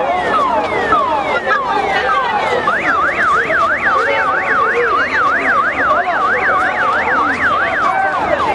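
Electronic vehicle siren sounding over crowd noise: a run of repeated falling chirps, then about three seconds in it switches to a fast rising-and-falling yelp of about three sweeps a second.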